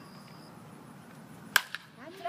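A single sharp crack of a baseball bat hitting a pitched ball about one and a half seconds in, loud against faint background and a thin high buzz in the first half second.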